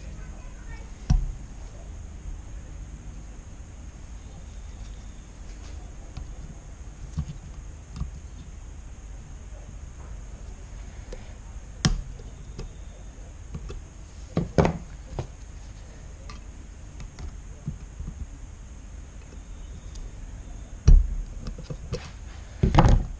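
Scattered metal clicks and knocks as circlip pliers work a retaining clip onto the pushrod of a brake master cylinder, with a heavier thump near the end.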